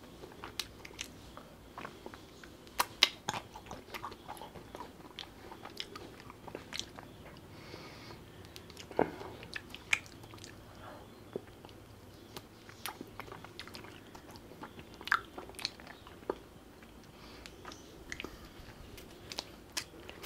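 Close-miked eating of the last of a pista kulfi ice cream bar on a stick: biting and chewing, heard as scattered sharp mouth clicks at an irregular pace, a few of them louder.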